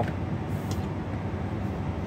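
Steady low hum of a truck cab, with a faint short rustle about two-thirds of a second in as paracord is pulled tight.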